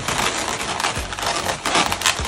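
Inflated Qualatex 260Q chrome latex twisting balloons rubbing against each other as they are pinched and twisted together: a dense run of small crackles and squeaks.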